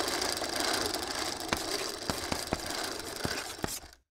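Logo sound effect: a steady mechanical rattle with hiss, like a running film projector, with a handful of sharp clicks in the second half, cutting off suddenly just before the end.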